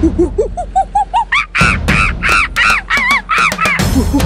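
Cartoon monkey calls: a run of short hoots climbing steadily in pitch, then a string of louder, higher screeches. Backing music plays underneath.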